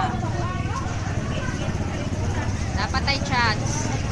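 Small motorcycle engine running steadily as the bike moves off, with voices of people nearby over it and a brief high-pitched call about three seconds in.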